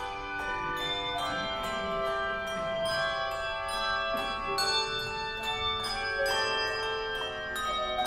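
A handbell choir playing a slow piece, with notes and chords struck every half second or so, each ringing on and overlapping the next.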